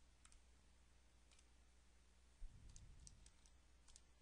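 Near silence broken by faint, scattered light clicks, about eight of them, some in quick pairs, with a soft low thump about two and a half seconds in.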